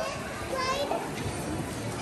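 A young child's high-pitched voice, heard briefly about half a second in, over the steady murmur of a busy shopping walkway.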